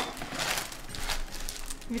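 Plastic packaging from a forensic examination kit crinkling and rustling unevenly in gloved hands.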